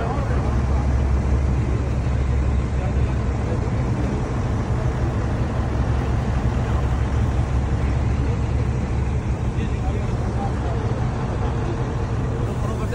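A heavy engine running steadily with a deep hum, under indistinct voices of people nearby. The hum drops back a little about nine seconds in.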